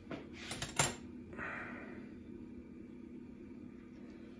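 A few light clicks and clinks of small hard objects, the loudest just under a second in, followed by a short soft rustle, over a steady low background hum.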